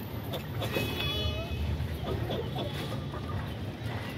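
Chickens clucking in short calls over a steady low rumble.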